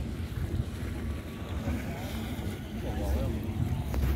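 Wind rumbling on the microphone, with faint voices of people talking in the background.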